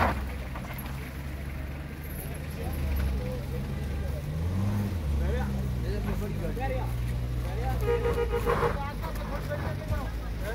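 A car engine running steadily, revving up and back down about four to five seconds in, with people's voices in the background and a brief steady tone near the end.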